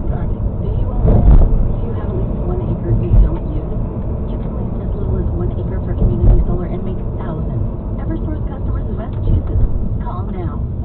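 Steady low rumble of road and engine noise inside a moving car, swelling briefly a few times. A radio talk programme plays faintly underneath.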